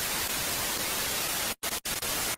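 Television static sound effect: a steady hiss of white noise, broken by two brief dropouts about a second and a half in.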